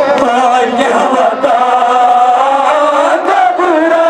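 Men's voices chanting a Kashmiri noha, a Shia mourning lament, together in long wavering notes, amplified over a loudspeaker.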